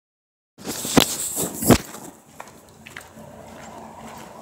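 Phone being handled as the recording starts: rubbing on the microphone with two sharp knocks about a second in and a little later, then a quieter outdoor hiss with a few small clicks.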